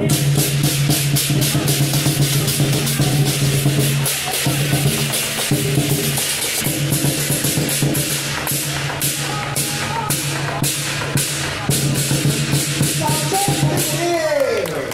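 Lion dance percussion: a large drum with clashing cymbals playing a steady, driving beat.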